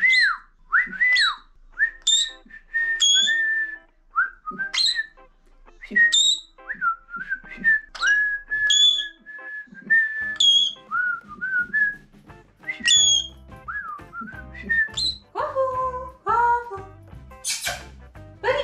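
A person whistling a series of short phrases, each of a few held or gliding notes, to a pet parrot. Soft background music comes in about halfway through.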